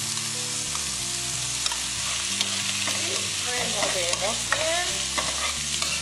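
Chopped onion frying in olive oil in a wok, sizzling steadily, as cooked penne is tipped in and stirred with a spoon. In the second half the spoon scrapes and squeaks against the pan.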